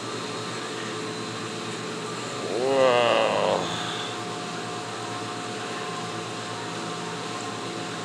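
Steady hum and hiss of aquarium equipment and store ventilation in a pet-store fish aisle. A short wordless voice sound comes about three seconds in.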